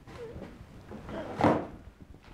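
A single short scrape about one and a half seconds in, as a diamond painting kit's box is set aside.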